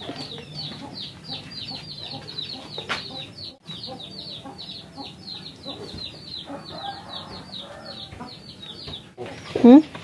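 Chicks peeping: a rapid run of short, high, falling cheeps, about five a second, that stops shortly before the end.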